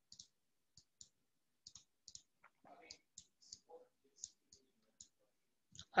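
A string of about a dozen light, sharp clicks at irregular intervals from a digital pen or mouse input while handwriting is drawn on a computer screen, with a faint murmur partway through.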